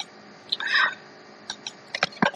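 A few computer-mouse clicks, with one short, high voice-like sound just over half a second in.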